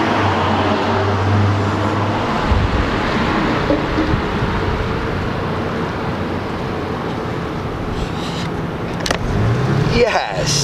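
Road traffic noise: a steady rush of passing vehicles, with a low engine hum in the first two seconds and a single sharp click near the end.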